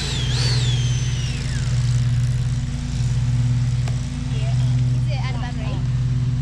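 A high electric whine wavering in pitch, then falling away about a second and a half in: the electric ducted fan of a 90 mm model F-22 jet winding down. Under it a steady low engine drone runs throughout, and a child's voice comes in near the end.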